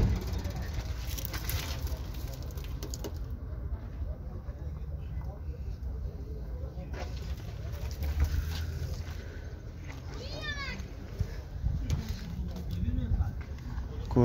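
Outdoor background: a steady low rumble with faint, indistinct voices of people nearby, and one short call rising and falling in pitch about ten seconds in.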